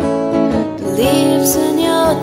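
Acoustic folk song: a strummed acoustic guitar, with a woman's singing voice sliding up into a note about a second in.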